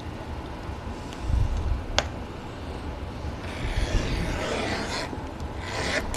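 A knife drawn along a steel ruler, slicing through a strip of book cloth: a scratchy cut starting about three and a half seconds in and lasting over a second. Low bumps of handling on the bench run throughout, with a single sharp click about two seconds in.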